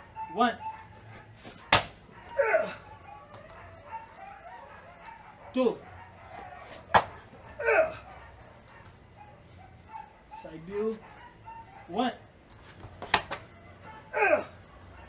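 Short, falling shouts and grunts (kiai), about six of them, with three sharp slaps between them, as a karateka drops to the mat and kicks: drop front kicks performed on count.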